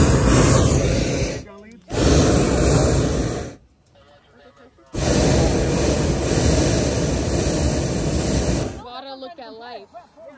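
Hot air balloon propane burner firing in three blasts, each starting and cutting off sharply. The first two last about a second and a half each, and the third nearly four seconds.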